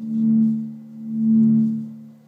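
An effects-laden electric guitar holds a low chord that rings on, swelling and fading in volume about once a second.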